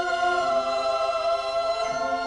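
Choral music with slow, sustained held chords, the voices moving to a new chord near the end.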